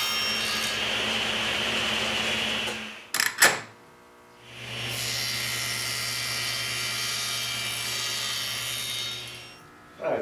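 Table saw running in two steady spells, about three and five seconds long, each winding up and down, with a couple of sharp knocks between them. The saw is trimming a little off the rabbet of a walnut moulding to make it fit.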